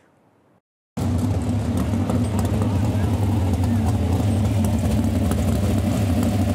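A sprint car's V8 engine running steadily. It starts abruptly about a second in, after a moment of near silence.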